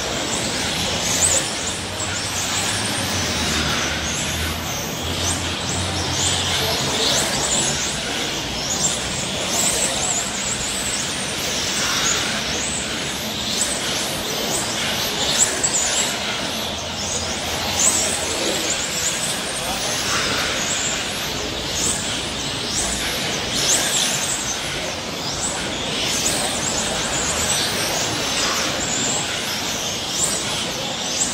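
Electric 1/10-scale front-wheel-drive RC touring cars, Serpent X20 FWD among them, racing past: repeated high motor whines rising and falling in pitch as the cars accelerate and brake through the corners, over a steady hiss.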